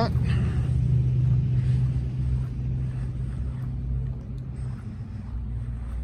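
A vehicle engine running at a steady low idle, a deep even hum that fades somewhat after about four seconds.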